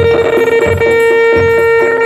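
Bantengan accompaniment music: a reed shawm (slompret) holding one long steady note over a regular beat of drums and gongs.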